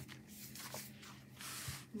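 Faint rustling and sliding as a planner folio is moved across a tabletop, with a short hiss about one and a half seconds in and a couple of light taps.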